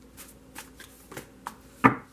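Tarot cards being handled and shuffled in the hand: a few light card clicks and flicks, then one much louder snap of cards near the end.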